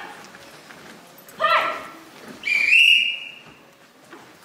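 High-pitched kiai shouts from young karate competitors performing kata: a short falling cry about one and a half seconds in, then a higher cry held for about a second.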